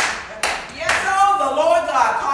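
Three sharp hand claps about half a second apart, followed by a drawn-out voice.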